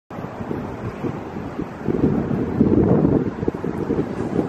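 Wind buffeting the camera's microphone: a loud, gusty low rumble that grows stronger about two seconds in.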